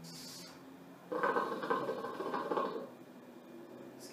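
Hookah water base bubbling as a long draw is pulled through the hose, a dense gurgle lasting about two seconds in the middle.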